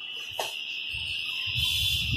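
A single steady high-pitched tone, with a click about half a second in and a low rumble in the second half.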